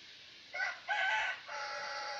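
A rooster crowing: two short notes starting about half a second in, then a long held note.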